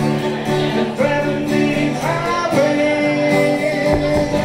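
Live folk-country music: a man singing to an acoustic guitar, with a fiddle playing along. A long held sung note comes in the second half.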